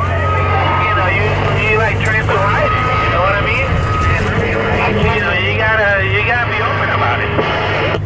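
Indistinct voices coming over a truck's CB radio, with a steady high whistle twice in the first half, over the low steady drone of the truck's engine in the cab.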